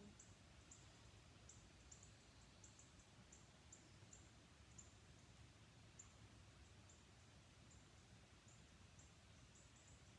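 Near silence: room tone, with faint short high-pitched chirps repeating irregularly.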